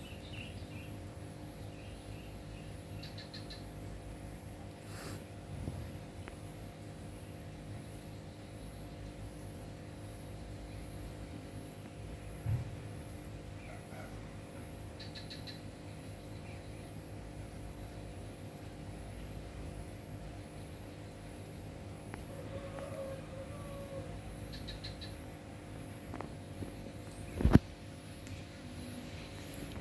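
Quiet outdoor ambience with a steady low hum, and a small bird giving short high chirps three times. A single sharp knock comes near the end.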